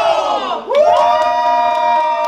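A small group of men and women shouting and cheering together in long held cries. The first cry falls away about half a second in, and a new one starts just after.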